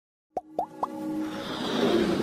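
Animated logo intro sound effects: three quick rising 'plop' blips about a quarter second apart, each a little higher in pitch. A swelling electronic music build-up follows.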